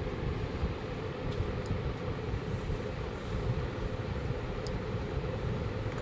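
A steady low rumble with a few faint ticks.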